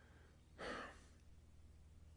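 A man's audible breath, a single short puff about half a second in, in an otherwise near-silent pause with a faint low hum.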